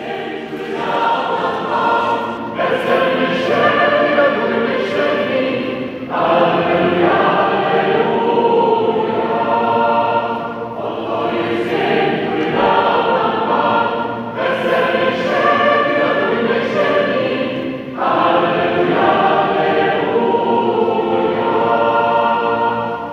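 A choir singing a slow piece in held chords, starting a new phrase every four seconds or so.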